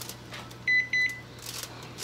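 Two short electronic beeps from a kitchen oven's control panel, a quick pair at one steady pitch, the second a little longer.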